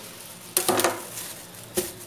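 Kitchen knife blade scraping briefly on a granite countertop as it finishes cutting through a block of homemade soap, then one sharp knock near the end.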